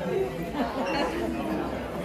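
Indistinct chatter of a small group of people talking, with no clear words.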